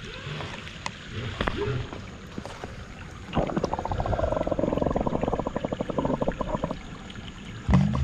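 Moving pond water heard through a submerged microphone, muffled. A fast crackling bubbling starts about three seconds in and dies away about a second before the end.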